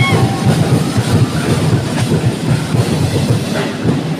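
Loud, fast festival percussion music with dense, driving drumming, played for a street-dance routine. A held high tone cuts off right at the start.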